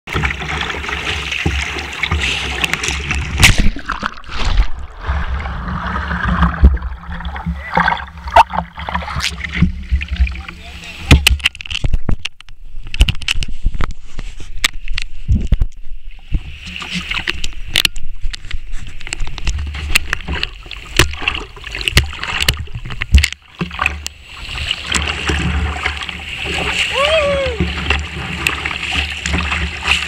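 Whitewater rushing and splashing around a kayak heard close to the water, with many sudden splashes and knocks as waves and paddle strokes hit the boat and the low-mounted camera.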